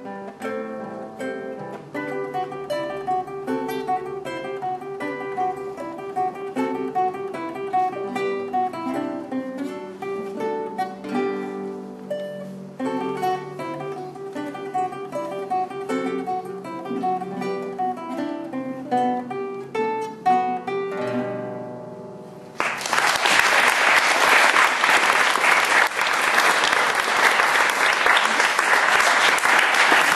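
Two acoustic guitars playing a duet of plucked notes, closing on a final chord that rings out about three quarters of the way through. Applause then follows, louder than the music, and runs on to the end.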